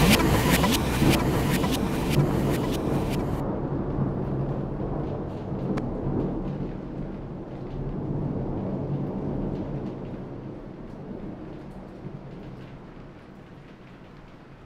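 Low rumbling drone closing out the track. The beat and its crisp top end cut off suddenly about three and a half seconds in, and the rumble fades away slowly after that.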